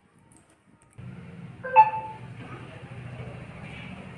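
Near silence, then from about a second in a steady low hum of room noise, broken a little later by one short, sharp ringing tone that fades within half a second.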